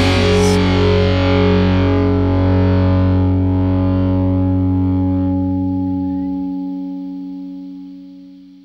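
A rock band's final chord ringing out, led by distorted electric guitar with bass underneath. It is held steady, then the low notes drop away about six seconds in and the chord fades out.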